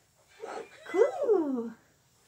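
A human voice doing a cartoon-dog whine in the manner of Scooby-Doo. A short sound comes first, then a long whimpering cry that rises and slides down over about a second.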